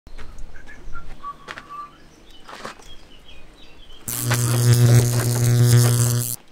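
Birds chirping faintly, then about four seconds in a loud, steady electric buzz that plays as a mock electrocution sound effect.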